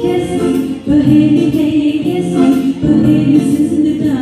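A woman singing a Hindi film song into a microphone, holding long notes over a karaoke backing track.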